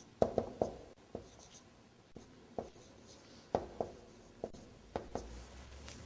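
Marker writing on a whiteboard: a scatter of short taps and strokes, about ten in all, with quiet gaps between.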